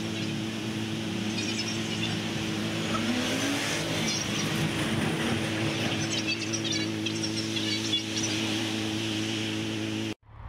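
Street traffic with a motorcycle engine running steadily at idle; about three seconds in, a vehicle's engine rises briefly in pitch as it revs.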